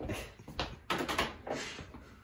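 Handling noises: objects on a cluttered table shifted and rummaged through, and a plastic drill-bit case picked up, in a few separate short clatters and rustles.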